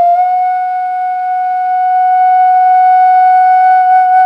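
Bamboo bansuri (side-blown flute) holding one long steady note, settling onto the pitch with a short waver just as it begins.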